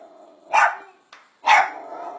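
Small dog barking at a snake: two sharp barks about a second apart.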